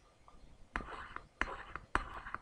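Three sharp computer-mouse clicks, about a second and a half apart in all, pressing keys on an on-screen calculator, with a soft whispered voice between them.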